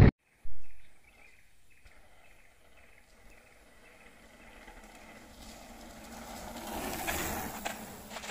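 Quiet forest ambience with faint insects, opened by a short rush of noise about half a second in; then a mountain bike rolling closer over a brick-paved path, its tyre noise swelling to loudest about seven seconds in, with a few ticks as it passes.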